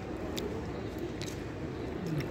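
Steady city street background noise, with two faint light clicks, about half a second and a little over a second in.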